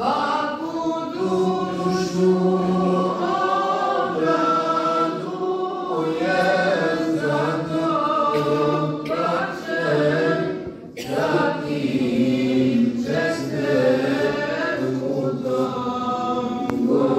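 A group of voices singing a devotional chant together in a mosque, in long held notes, with a brief break about eleven seconds in.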